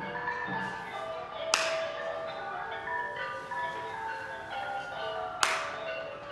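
Cambodian classical pinpeat music playing, with busy mallet-struck melodies from xylophone-like and gong-like instruments. Two sharp cracks cut through it, about one and a half seconds in and near the end.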